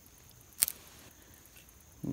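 A dry ragweed stalk snapping as it is cut with a knife: one short, sharp crack about half a second in, with a smaller tick right after. It snaps only a little, a sign that the stalk is drying but not fully ready as tinder.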